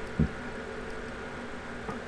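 Steady hum and hiss of running cooling fans, with a short low thump about a quarter second in.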